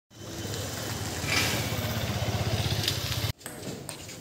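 A motor vehicle engine running close by, with a fast, even low pulse, cutting off abruptly a little over three seconds in.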